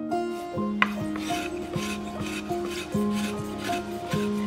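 Wooden-bodied spokeshave shaving a curved wooden chair backrest in quick, repeated scraping strokes, about two a second, starting about a second in.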